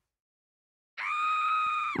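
A high-pitched acted scream, "Aaah!", held on one steady pitch for about a second. It starts about a second in, after dead silence.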